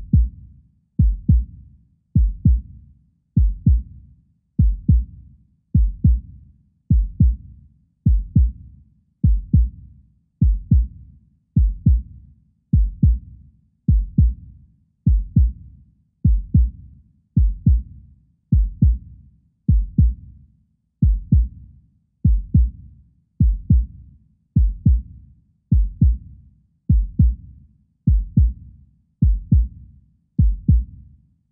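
A deep, heartbeat-like double thump (lub-dub) repeating evenly, a little more than once a second, with nothing else over it.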